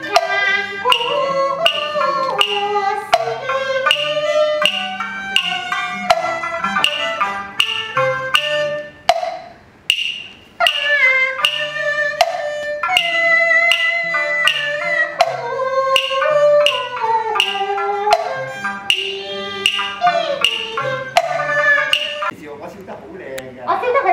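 Cantonese opera accompaniment ensemble playing live: a traditional melodic line on fiddle and wind, with a sharp percussion beat about twice a second. It pauses briefly about ten seconds in, then resumes.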